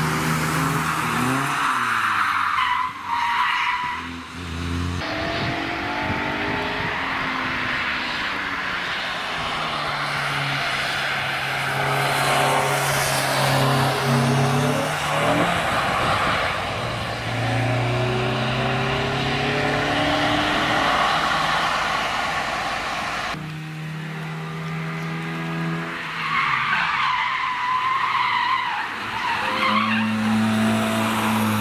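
Cars at speed on a racetrack, one clip after another: engines revving up through the gears, the pitch climbing and dropping at each shift. Tyres squeal and skid as cars slide through corners, with tyre spray hissing on the wet track in parts.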